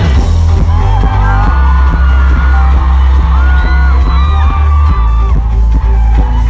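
Live pop music over a concert PA, recorded from the crowd: a heavy, steady bass under a singer's held, gliding vocal line, with audience whoops and yells.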